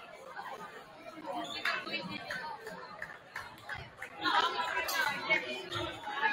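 Indistinct chatter of many voices in a school gymnasium, growing louder about four seconds in, with a few short knocks.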